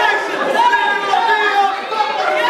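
Several raised voices talking and calling out at once, loud and unbroken, in a large hall.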